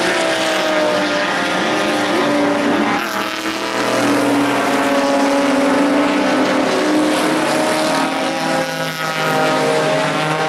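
Several race cars' engines running at speed through a road-course section, their overlapping notes rising and falling as they accelerate and lift. The engine sound is loud throughout.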